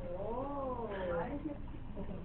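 A faint, drawn-out, high vocal call lasting about a second, rising and then falling in pitch.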